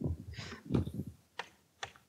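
Chalk on a blackboard: soft scraping, then two sharp taps a little under half a second apart.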